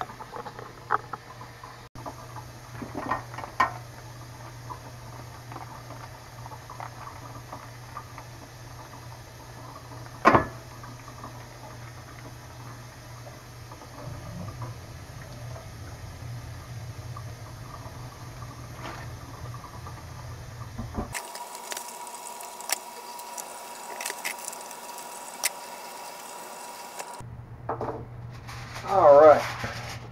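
Hot water running from a kitchen faucet into a stainless steel sink, splashing over a vacuum-sealed fish pouch, with one sharp knock about ten seconds in. For several seconds past the middle the low hum drops away and a steady high tone with light ticks comes in.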